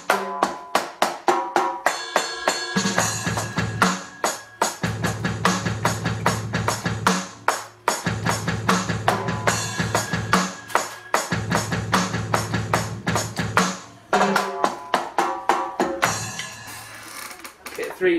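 Roland HD-1 electronic drum kit played on its third preset kit: a fast, busy drum groove of rapid hits. Several times a deep low rumble holds for a couple of seconds under the strokes.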